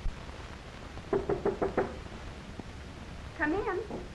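Five quick knocks on a wooden door, then a woman's short call near the end.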